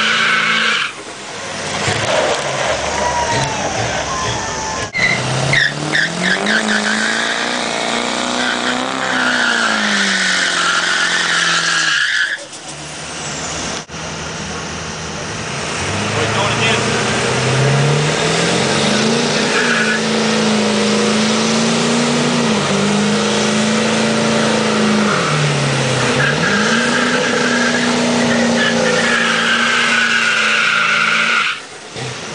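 Ford crew-cab diesel pickup doing a burnout: the engine revs climb and fall again and again over a steady high tyre screech. The sound breaks off abruptly a few times between takes.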